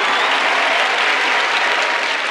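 A large live audience applauding.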